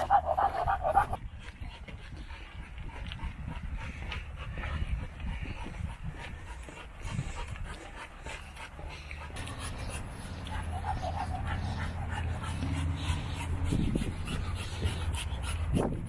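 A dog panting steadily on the lead, over a steady low rumble.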